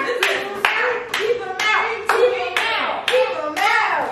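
Hands clapping in a steady rhythm, about two claps a second, with voices going on underneath.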